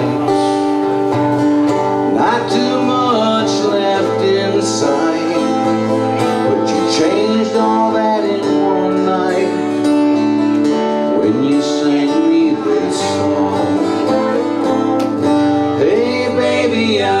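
Acoustic guitar playing a slow country-blues song, with a man singing over it, his voice sliding between notes.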